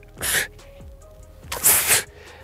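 A man breathing out hard twice, winded from strenuous explosive push-ups; the second exhale, near the end, is louder and longer.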